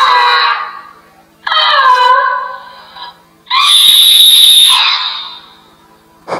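Monkey calls: three loud, high-pitched calls in a row, each a second or two long.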